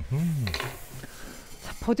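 A short hum from a person, its pitch rising and falling, then about a second of rustling and light clatter from things being handled.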